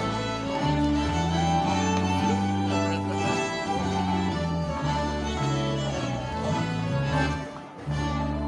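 Live Swedish old-time dance band playing gammeldans: fiddles lead over accordion and a steady stepping bass line, with a brief dip in loudness near the end.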